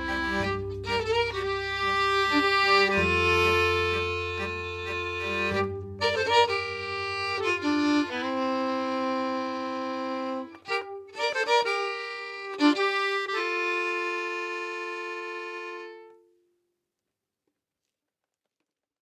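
Fiddle and accordion playing the closing bars of a Scandinavian folk tune, with a low bass line under the first few seconds. It ends on a long held chord that dies away about sixteen seconds in.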